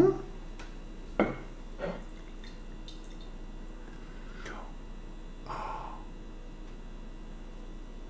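Water and imitation honey swirled in a ceramic bowl for the honeycomb test: faint sloshing, with a few soft knocks and clicks from handling the bowl on its plate.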